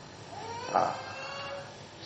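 A single high-pitched, drawn-out vocal 'aa' sound that glides up and then holds steady for about a second.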